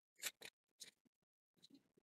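Faint rustling of a paperback book's page being turned by hand: a few short paper swishes in the first second and another near the end.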